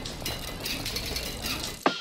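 Spinning bicycle wheel clicking, a run of light irregular ticks. Music starts suddenly near the end.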